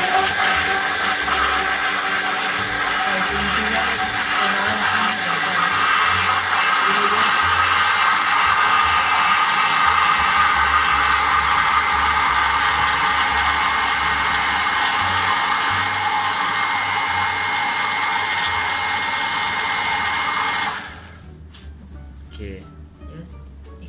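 Countertop electric blender running steadily, emulsifying vegetable oil into an egg-based salad dressing as the oil is poured in, then switching off suddenly near the end.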